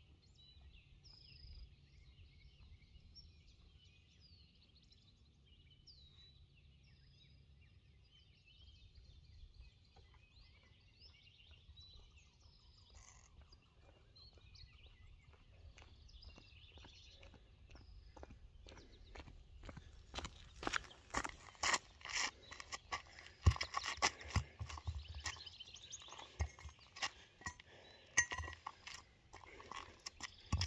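Birds chirping faintly. About two-thirds of the way in, footsteps crunch on gravel, coming closer and growing louder, with a few heavier knocks among them.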